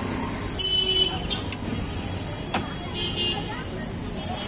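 Busy street ambience of road traffic and background voices, with a vehicle horn tooting briefly twice: about half a second in, and again about three seconds in.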